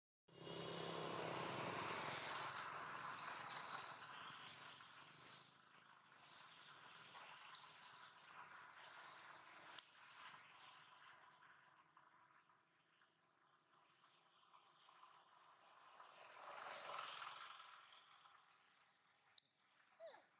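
Near silence: faint outdoor background noise that swells at the start and again near the end, with faint repeated insect chirps in the second half and a few small clicks.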